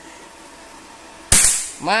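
A single shot from a Predator Mahameru PCP bullpup air rifle: one sharp crack about a second and a quarter in, dying away quickly.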